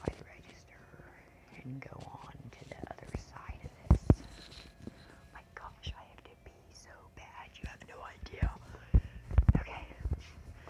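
Quiet whispered speech close to the microphone, with a few sharp knocks about four seconds in and a cluster of them near the end.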